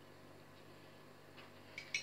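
Quiet kitchen room tone, with a couple of faint light clicks near the end from a metal spoon touching a small cup as syrup is spooned onto a sponge cake layer.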